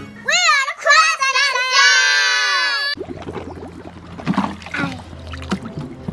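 A short sung intro jingle with an electronically processed voice that slides up and down in pitch, stopping suddenly about halfway through. Then quieter sound of children scooping water from a paddling pool with watering cans: light splashing and a child's voice.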